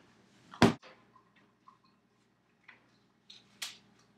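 A single sharp smack about half a second in, then a few faint clicks and taps and a second, weaker smack near the end, over a faint steady hum.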